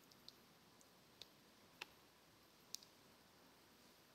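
Near silence broken by about five faint, sharp clicks spread irregularly over a few seconds.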